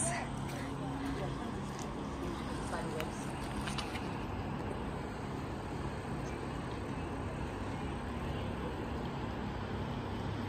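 Faint, steady low hum of a distant engine under outdoor background noise.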